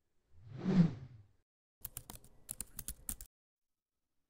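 Logo-animation sound effects: a whoosh that swells and fades about a second in, followed by a quick run of clicks like typing on a keyboard that lasts about a second and a half.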